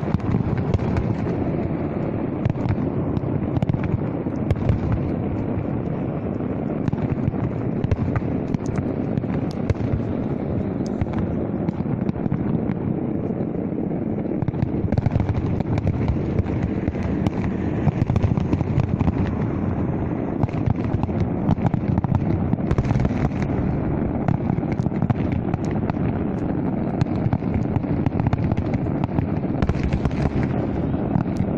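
A fireworks display: a continuous run of bangs and crackling pops over a steady rumble.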